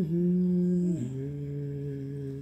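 A man humming low, steady notes to calm a guinea pig: one held note, then, about a second in, a step down to a lower held note.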